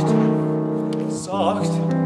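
A singer holding notes with a wide vibrato over piano accompaniment; the voice swells on a wavering note about one and a half seconds in, between sustained piano chords.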